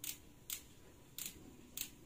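Original adhesive decal being peeled off a bicycle rim in short pulls, giving four brief tearing sounds about half a second apart.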